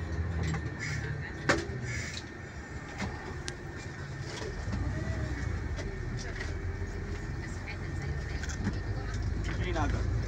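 Passenger bus engine running and road noise heard from the driver's cab while driving, a low drone that grows louder about halfway through as the bus picks up speed. A single sharp click comes about one and a half seconds in.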